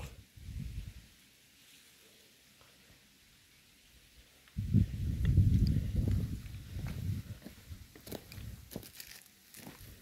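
Footsteps crunching over dry grass, dead leaves and hard soil, with a few short sharp crackles in the last few seconds. A heavy low rumble on the phone's microphone for a couple of seconds from about halfway through.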